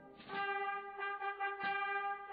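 Background music played on brass instruments: after a brief dip at the start, held chords sound, with a new chord coming in just after the start and again about a second and a half in.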